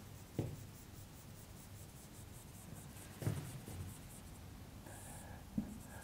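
Felt-tip marker drawing on a whiteboard, faint: a quick run of short scratchy strokes as a row of small hatch marks is sketched along a line, with a few soft knocks.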